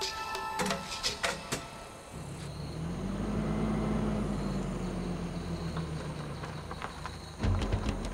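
A car engine running as the pickup drives with the light trap on its front, a low hum that rises a little in pitch and then slowly eases. Music plays over the first couple of seconds, and a louder beat comes in near the end.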